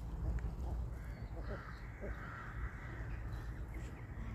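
A crow cawing, a harsh call about a second in that carries on for nearly two seconds, over a steady low rumble.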